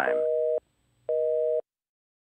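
Telephone busy signal: two beeps of a steady two-note tone, each about half a second long with a half-second gap, then it stops. It follows a recorded "number not in service" message and signals that the call cannot go through.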